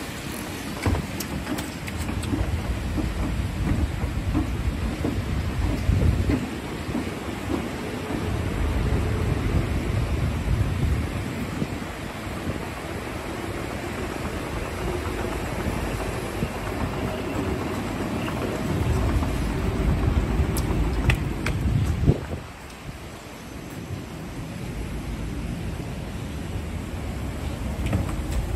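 Wind buffeting the microphone in low, fluctuating rumbles over steady rain noise, around a running outdoor escalator. The rumble drops off suddenly about 22 seconds in, after a few short clicks.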